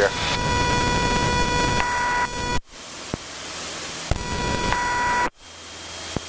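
Light aircraft's stall warning horn sounding a steady tone over cockpit engine and wind noise, the sign of the wing nearing the stall at high angle of attack. The horn sounds for about two seconds, the sound cuts out abruptly, then it sounds again for about a second and a half before another sudden cut-out.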